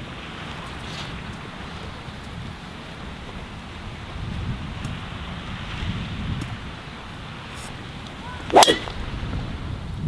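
Steady wind hiss, then, about eight and a half seconds in, a single sharp crack of a golf driver striking the ball off the tee.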